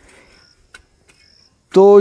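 Two short, faint, high-pitched insect calls, about half a second and a second and a half in, with a faint tick between them. A man's voice starts near the end.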